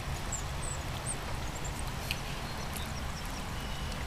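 Outdoor riverbank ambience: a steady low rumble, with a few short, high bird chirps in the first second and a half and a single click about two seconds in.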